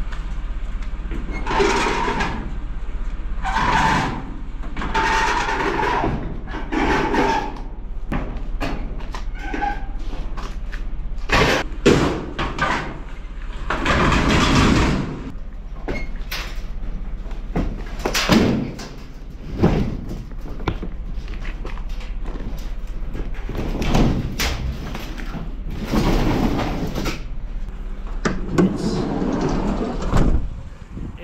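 A metal clothes dryer being dragged, scraped and lifted into a cargo van, with repeated knocks and thumps of its sheet-metal body against the van, over a steady low hum.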